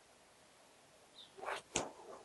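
Quiet outdoor background, then late on a short swish and a sharp click, followed by a couple of softer knocks.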